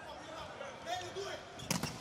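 A volleyball struck hard with the hand, a single sharp smack near the end, over the low murmur of an arena crowd.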